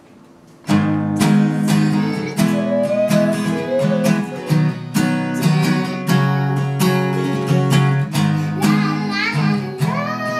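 Acoustic guitar strummed in a steady rhythm of chords, starting just under a second in. A child starts singing over it near the end.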